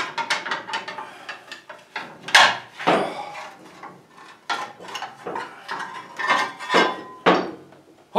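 Metal-on-metal clinks, knocks and scrapes as a bent steel pin is worked out of a wrecker boom's worn pulley and the pulley comes free. The strikes are irregular, some with a brief metallic ring.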